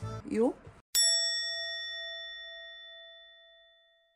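A single bell-like ding, struck once about a second in and ringing out with a clear tone that fades away over about three seconds.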